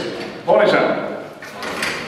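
A metal gate in the sale ring sliding and rattling: a sudden scrape about half a second in that fades away, and more short scrapes near the end, with voices murmuring.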